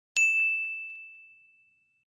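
Notification-bell chime sound effect of a subscribe-button animation: a single bright ding that rings out and fades away over about a second and a half.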